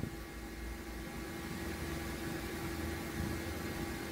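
Steady low hum and hiss with a faint steady tone, no speech and no music: the background noise of the voice-over recording.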